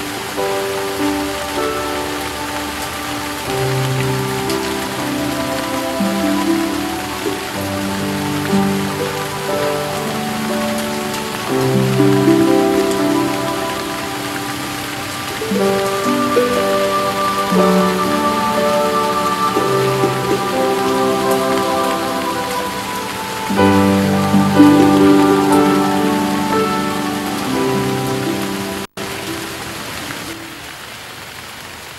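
Steady rain falling on hard paving, under a slow background music score of held chords and notes. The sound cuts out for an instant about a second before the end.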